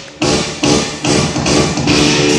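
Upbeat pop dance music from a stage show, with punchy hits about twice a second over held chords; the music drops out briefly just after the start and comes back in on a hit.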